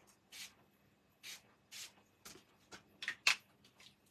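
Small hand-pumped spray bottle of shimmer mist spritzing onto card stock: three short hissing sprays in the first two seconds, then a few shorter, sharper sounds near the end, the last the loudest.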